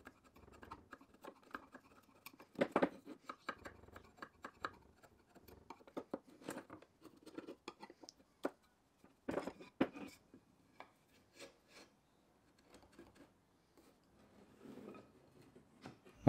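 Bench chisel paring the joint faces of an ironbark bridle joint: faint, irregular scrapes and small clicks of the blade cutting hardwood.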